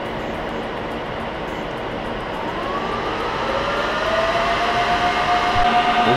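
IBM System x3650 M2 rack server's cooling fans spinning up at power-on, over the steady whir of other running rack servers: about two seconds in a whine rises in pitch, then settles into a steady, louder high whine.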